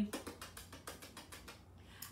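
Pretend eating: a quick run of soft, faint mouth clicks like chomping or lip-smacking, thinning out after about a second.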